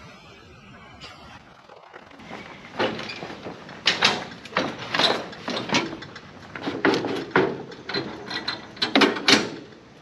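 Irregular clanks, knocks and rattles of lawn equipment being handled and stowed on an open trailer, starting about three seconds in and going on until shortly before the end.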